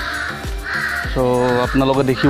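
A crow cawing twice. After about a second, background music with a steady beat comes in.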